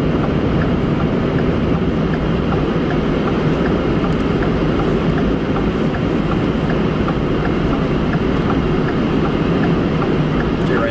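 Steady road and engine noise inside the cab of a V8 Ford F-150 FX4 pickup driving along, a deep even rumble with tyre hiss. Faint light ticks recur about twice a second throughout.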